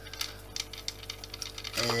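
Small irregular clicks and ticks of a screwdriver working a screw out of the plastic top of a Dyson DC25 vacuum cleaner's cyclone assembly.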